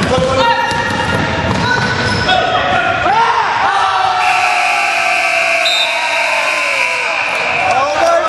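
A basketball bouncing on a hardwood gym floor amid players' shouts. About four seconds in, the scoreboard buzzer sounds one steady tone for about three and a half seconds, stopping just before the end: the game clock has run out.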